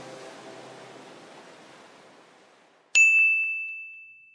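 Background music fading out, then a single bright bell ding about three seconds in that rings on one clear high note and dies away over about a second and a half.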